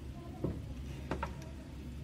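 Low steady room hum with a few light clicks: one about half a second in and two close together a little after a second in.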